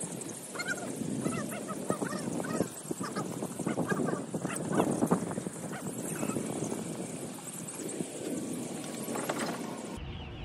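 Wood shavings rustling as they are poured and spread by hand in a chick brooder, mixed with short honking or quacking calls from poultry, most of them in the first half.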